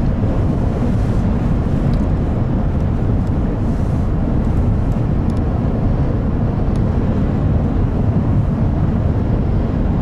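Steady low rumble of a moving car heard from inside the cabin: road and engine noise as it is driven along a paved highway.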